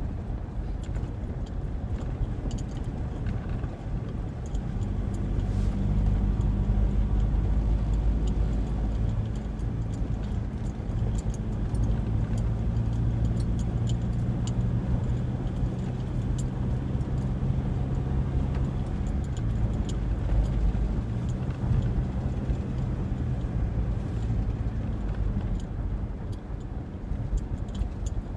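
Engine and road noise of a moving Ford, heard from inside the cabin. It is a steady low drone that grows louder about five seconds in and holds as the car picks up speed.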